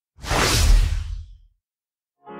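A single whoosh sound effect with a deep low rumble under it, swelling up about a quarter second in and fading away by about a second and a half.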